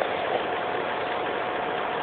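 Steady background hiss with a constant hum, unchanging throughout.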